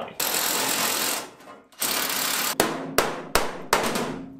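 Hammer blows on the truck's sheet-metal cab corner, four sharp separate strikes in the last second and a half, knocking the replacement panel in against the rocker. They follow two stretches of steady hissing noise, the first about a second long.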